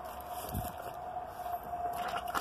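Outdoor wall faucet (hose spigot) being opened, water rushing through the valve with a steady high whistle and a hiss.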